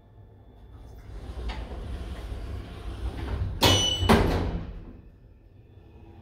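Automatic sliding doors of a WDE hydraulic lift closing. The sliding noise builds for a couple of seconds, then comes two clunks about half a second apart as the door panels shut, with a brief ring, and the sound dies away.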